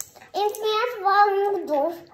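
A small child's voice singing a short drawn-out phrase. The notes are held at a steady pitch and then drop near the end.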